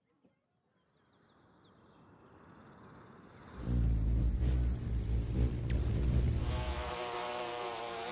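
Wing buzzing of a hovering hummingbird and a bee. Faint high chirps come in the first couple of seconds. A loud low hum starts about three and a half seconds in and gives way near the end to a higher, more pitched bee buzz.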